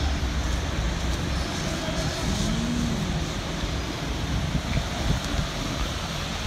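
Steady city traffic noise: a continuous low rumble of road vehicles.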